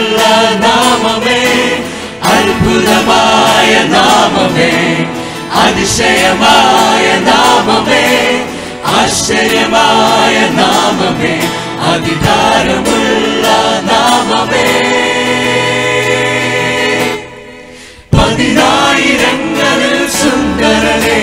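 Mixed group of male and female voices singing a Christian hymn in harmony through microphones. Near the end they hold a long chord that fades away, and after a brief pause the singing starts again.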